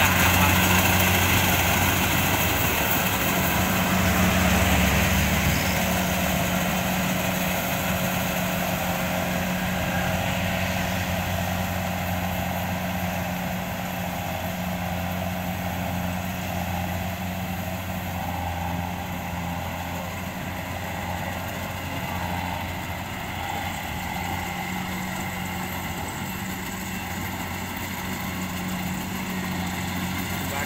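Rice combine harvester's diesel engine running steadily as it cuts through the paddy, with a constant low hum. It grows fainter over the first dozen seconds as the machine moves away, then holds level.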